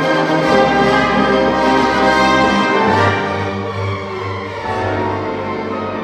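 Symphony orchestra playing sustained chords with brass prominent; about halfway through the low bass notes shift to a new pitch.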